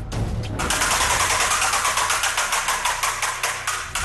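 Game-show prize wheel spinning, its pointer clicking rapidly and evenly against the pegs.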